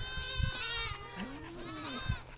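Livestock bleating: a high, arching call at the start, a lower call that rises and falls in the second half, and another high call near the end.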